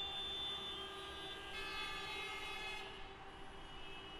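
Background music: a sustained ambient synth chord of steady held tones, its upper notes changing about a second and a half in and fading near the end.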